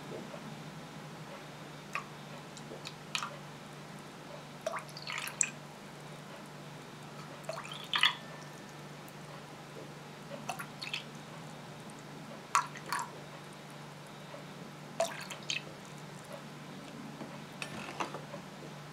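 Water dripping from a plastic measuring jug into a stainless-steel bowl, a few drops at a time, often in quick pairs, every second or two, as it is poured out slowly to an exact weight. A faint steady low hum runs underneath.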